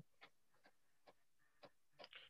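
Near silence with a handful of faint, irregularly spaced clicks.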